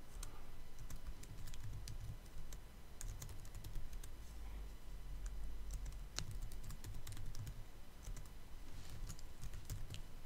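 Typing on a computer keyboard: irregular key clicks as a line of code is typed, over a faint low hum.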